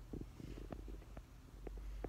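Handling noise from a handheld phone camera: a low rumble with a few scattered faint clicks and rubs.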